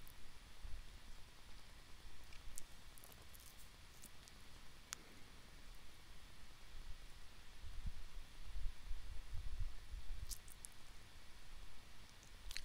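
Quiet room tone with a low rumble, broken by a few faint, short clicks scattered through it.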